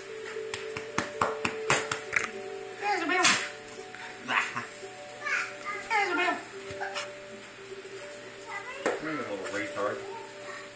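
Rough play between dogs and a man: a quick run of knocks and scuffling in the first couple of seconds, then several short vocal sounds that bend in pitch, over a steady background of music and hum.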